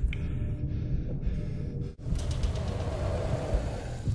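Low, rumbling background music that breaks off abruptly about two seconds in, then continues with a brighter, hissier sound.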